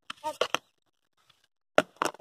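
Several short clacks of plastic flying discs knocking together as they are picked up from a pile, bunched in the first half second, then one more sharp click near the end.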